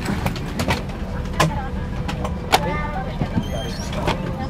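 Steady low rumble in the cabin of an Airbus A340-300 airliner parked before pushback, with faint passenger voices and scattered clicks. A brief high tone sounds near the end.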